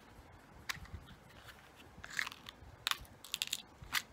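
Light clicks and taps of a clear plastic jewellery compartment case and small jewellery pieces being handled. There are a few isolated clicks, then a quick run of them near the end.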